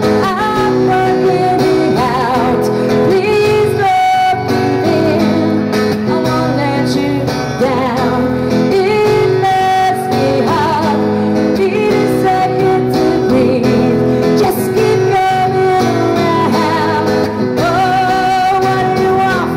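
A woman singing, her long notes held with vibrato, over a steadily strummed acoustic guitar.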